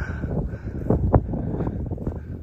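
Wind buffeting the microphone with a low, fluttering rumble, and a couple of dull thumps about a second in.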